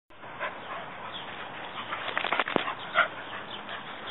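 Two beagles play-fighting: short dog vocal sounds with scuffling, and a quick run of sharp clicks a little past two seconds in.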